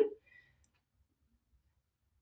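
Near silence after the last word trails off.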